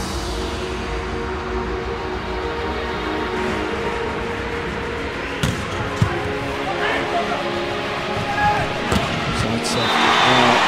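Arena crowd noise under steady background music, broken by a few sharp thumps of a volleyball being struck, two close together in the middle and one near the end.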